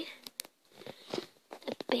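Talking that pauses, with a few sharp clicks of handling noise in the gap before the voice resumes.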